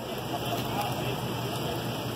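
Steady outdoor street noise, an even hiss with indistinct voices of bystanders talking in the background.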